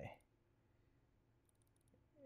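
Near silence: room tone, with a few faint computer mouse clicks near the end.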